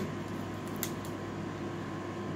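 Steady mechanical room hum, with one faint click a little under a second in.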